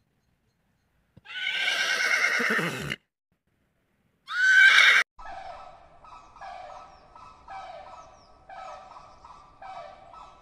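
Horses neighing: a long whinny starting about a second in, then a short rising neigh that cuts off at about five seconds. After that, a flock of flamingos calls quietly with short honks repeating about once a second.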